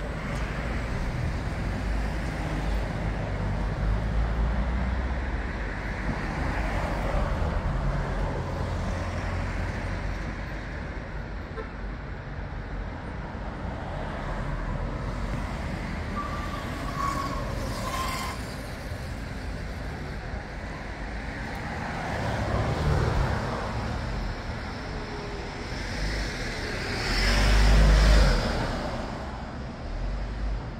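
Street traffic: cars passing steadily with a low engine and tyre rumble. A louder vehicle passes close near the end.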